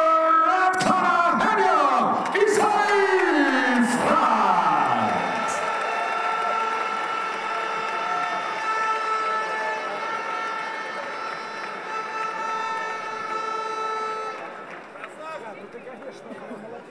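A ring announcer's amplified voice over the arena PA, stretching out the winner's name in a long call that falls away about five seconds in. Steady held tones carry on under the crowd until shortly before the end.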